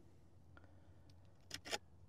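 Very faint pouring of granulated sugar from a plastic measuring cup onto a beehive feeding shim's mesh screen, mostly hushed, with a few brief scrapes near the end.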